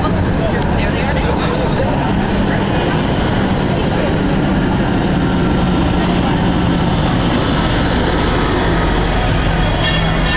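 Busy city street noise: vehicle engines running with the babble of passers-by' voices. A fire engine's heavy engine drone grows stronger near the end.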